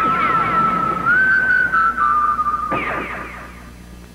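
Whistled melody holding long, slightly wavering notes, stepping up about a second in and down again about two seconds in, with quick falling glides over it; it fades away in the last second.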